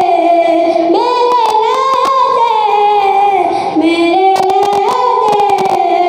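A boy singing a naat, a devotional poem in praise of the Prophet, unaccompanied into a microphone. He holds long notes that glide and waver in pitch, starting a new phrase about a second in and another after a short breath at about three and a half seconds.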